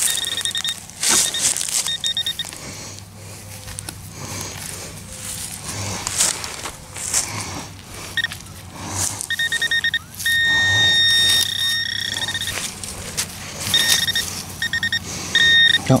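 A metal detector sounds a fixed high-pitched beep, in short pulsed bursts and one long held tone of about two and a half seconds past the middle, as it is worked over a silver coin in a freshly dug hole. Scraping and knocking of a hand digger in the soil comes between the beeps.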